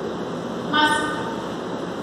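A single short honk with a steady pitch about a second in, over a steady room hiss.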